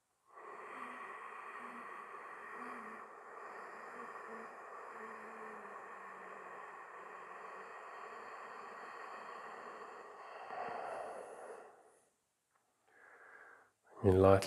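A man's slow, deep breath held in a chin lock: one long, steady breath of about eleven seconds, a little louder near its end, then a short faint breath just before the end.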